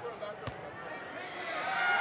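A basketball bounced once on the hardwood court about half a second in, a free-throw shooter's pre-shot dribble, over steady arena crowd noise.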